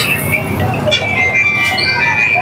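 Busy roadside street noise: a steady traffic rumble with background voices and music-like tones, over the sizzle of a burger frying in butter on a flat iron griddle.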